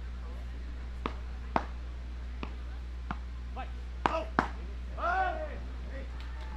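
Beach tennis paddles hitting the ball in a quick volley exchange, about seven sharp hits roughly half a second apart.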